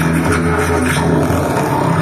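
Live rock band playing, with drums and electric bass over a steady low drone from a long wind instrument blown like a didgeridoo.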